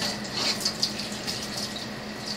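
Cold tap water running and splashing over a hot pot in a stainless steel kitchen sink.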